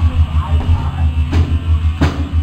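A heavy rock band playing loud and live: distorted guitar and bass over a drum kit, with a cymbal crash about a second and a half in.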